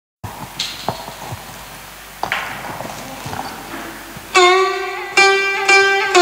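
Faint room noise with a few light knocks, then, about four seconds in, a plucked string instrument starts a song's introduction with loud, ringing, sustained notes.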